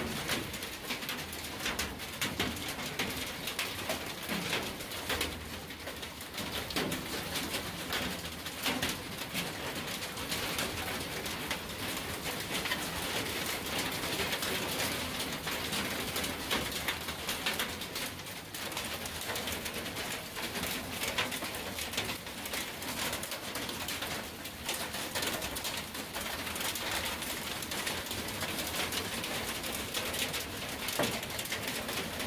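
Rain and hail falling steadily, a dense pattering without a break, with a bird cooing now and then.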